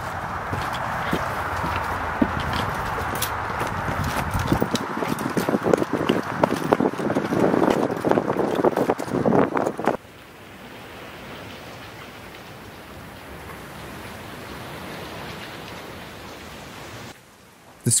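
Footsteps and scuffing taps over a steady outdoor hiss, the taps coming thicker around eight to ten seconds in. About ten seconds in the sound drops suddenly to a quieter, even hiss.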